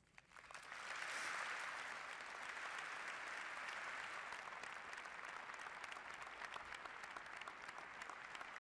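Large audience applauding, the clapping building up over the first second and then holding steady.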